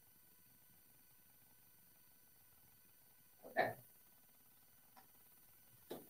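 Near silence: quiet room tone, broken by one short, soft sound about three and a half seconds in and a fainter click near the end.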